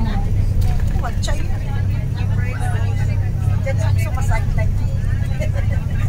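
Steady low drone of a tour coach's engine and road noise heard inside the cabin while driving, with passengers' voices murmuring over it.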